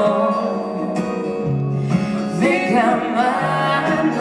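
Live acoustic song: strummed acoustic guitar under a slow sung vocal line, with held notes and a voice that bends in pitch.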